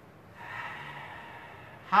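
A man's long audible breath, about a second and a half, starting about half a second in.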